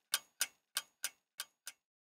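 Sharp ticking clicks, about three a second in a slightly uneven tick-tock rhythm, growing fainter toward the end.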